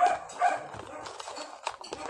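A dog barking twice in quick succession, the two short barks about half a second apart.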